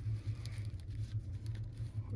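Faint rustling and small clicks from handling a cloth cape on a plastic action figure, over a steady low hum.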